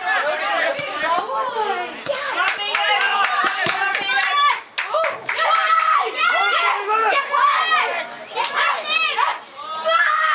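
Voices of footballers and onlookers calling out across an outdoor pitch during open play, with several sharp knocks or claps among them.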